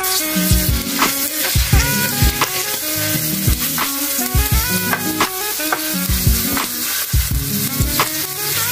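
Pork tenderloin steak sizzling in hot oil in a nonstick frying pan, a steady hiss that starts as the meat goes in, with background music playing over it.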